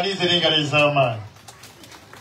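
A man's voice holding one long, drawn-out syllable that falls steadily in pitch, then stops about a second and a half in.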